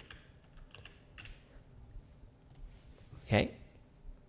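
Faint computer keyboard typing: a few soft, scattered key clicks as a file name is entered.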